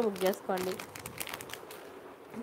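Clear plastic zip bags holding jewellery crinkling as they are handled, a few short crackles after a word of speech.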